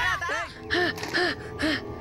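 A person panting in short voiced gasps, a little over two a second, over background music.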